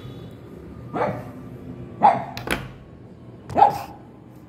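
A dog barking four times in short single barks: about a second in, twice in quick succession around two seconds, and once more, loudest, near the end.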